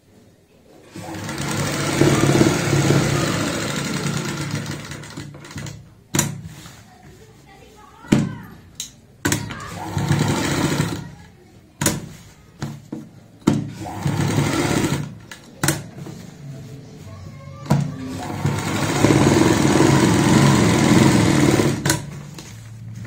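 Domestic sewing machine stitching a seam at a presser-foot's width in several runs of one to four seconds, with pauses and sharp clicks between runs.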